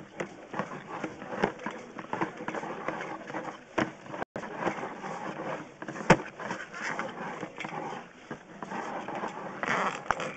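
Sewer inspection camera's push cable being pulled back quickly out of the line, a continuous rattling scrape with irregular clicks and one sharp click about six seconds in.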